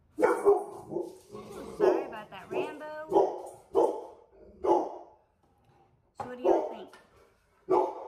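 A dog barking repeatedly, about a dozen short barks with a pause of about a second past the middle.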